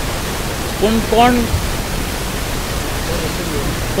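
Steady hiss of background noise throughout, with a brief burst of a man's voice about a second in and a fainter murmur near the end.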